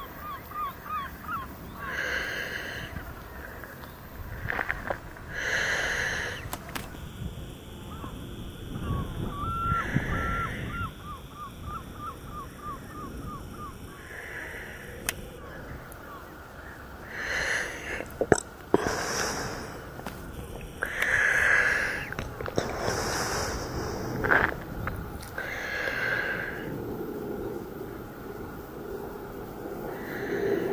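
A person breathing heavily close to the microphone, a breath every one to three seconds. A bird gives a quick run of high chirps near the start and again about ten seconds in, and there are a couple of sharp clicks of camera handling about two-thirds of the way through.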